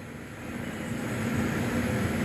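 Billiard-hall background noise: a low, steady rumble with indistinct crowd murmur, slowly growing louder.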